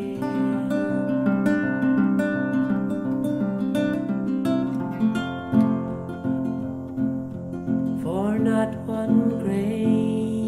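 Acoustic guitar music, strummed in a steady rhythm, with notes sliding up in pitch near the end.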